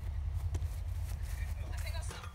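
Footsteps of two boys walking and jogging on an asphalt driveway, faint knocks over a steady low rumble.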